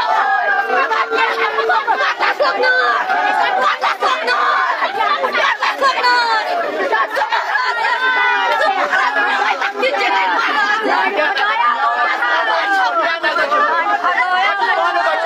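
Crowd chatter: many people talking over one another at once, loud and continuous, with no single voice standing out.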